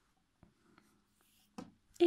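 Near silence, with a few faint light ticks and a slight rustle of hands handling and twisting yarn on a crocheted piece.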